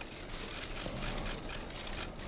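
Faint, rapid clicking of camera shutters in bursts over steady room noise.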